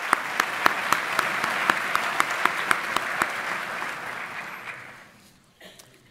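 Audience applauding, with sharp individual claps close to the microphone standing out over the crowd's clapping; the applause dies away over the last couple of seconds.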